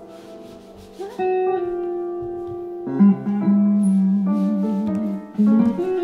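Improvised music: piano tones fade out, then semi-hollow electric guitar notes come in about a second in, one sliding up in pitch and held. From about three seconds, louder, lower notes waver in pitch.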